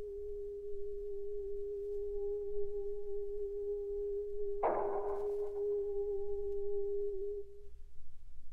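Early electronic music on a Buchla synthesizer: a steady, nearly pure tone held through most of the stretch. About four and a half seconds in, a sharp, noisy struck attack cuts in and dies away over about a second, and the tone stops near the end.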